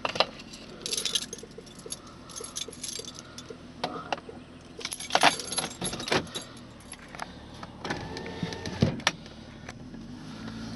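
Car keys jangling and clinking in irregular short bursts while the car moves, over the low steady hum of the car's engine.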